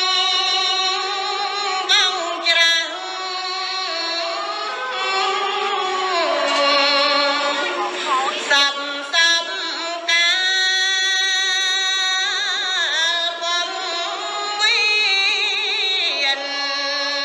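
A woman chanting smot, Khmer Buddhist sung verse, solo into a microphone, in long held, ornamented notes with a wide, wavering vibrato and slow glides between pitches.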